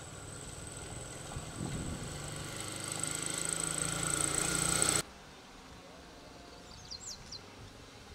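A motorcycle engine passing close on the road, getting louder, then cut off abruptly about five seconds in. Afterwards there is quieter outdoor background with a few short bird chirps near the end.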